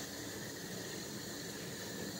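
Quiet, steady hiss of room tone with no distinct sound in it.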